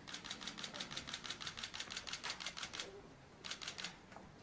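Still-camera shutters firing in a rapid burst of clicks, about nine a second for nearly three seconds, then a second short burst just before the end.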